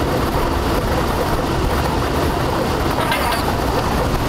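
Lottery ball draw machine running with a steady, even noise of its mixing chamber as the third ball of a three-digit draw comes out.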